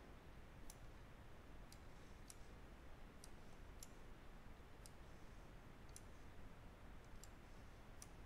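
Faint computer mouse clicks, about ten spaced irregularly, as parts are picked up and dropped in PCB layout software, over a low steady room hum.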